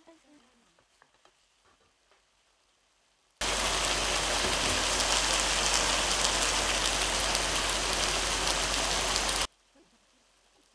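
Chicken pieces and onion frying in a pan: a loud, steady sizzle that starts suddenly about three seconds in and cuts off suddenly near the end. Before it, a few faint knocks of a wooden spoon stirring the pan.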